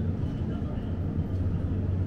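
Supermarket background: a steady low hum under a faint even noise, with no distinct events.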